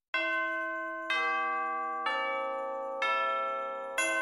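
Background music of bell-like chimes: a chord struck about once a second, four times, each one ringing and slowly fading.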